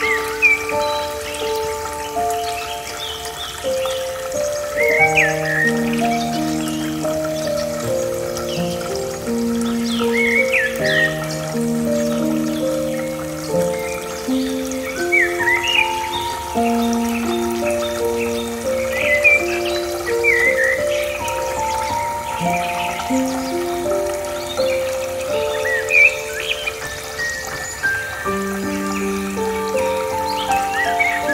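Slow, calm instrumental music of long held notes over a soft bed of trickling water, with short bird chirps every few seconds.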